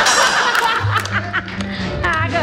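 Studio laughter over a short music cue; a low, steady bass note comes in about a second in.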